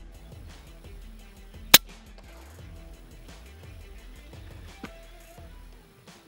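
A single sharp shot from a suppressed PCP air rifle firing a .177 slug, a little under two seconds in, over background music. A much fainter click follows about five seconds in.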